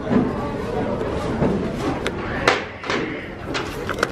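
Store merchandise being handled on a shelf: notebooks and plastic-packaged items shuffled and set down, with a few sharp knocks, over steady store background noise.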